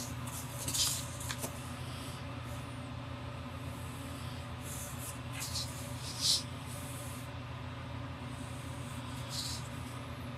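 Fine-tip ink pen scratching on paper in a handful of short drawing strokes, the loudest just under a second in and about six seconds in, over a steady low hum.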